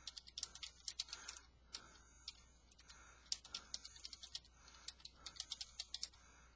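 Computer keyboard being typed on, faint, in quick irregular runs of keystrokes with short pauses between them.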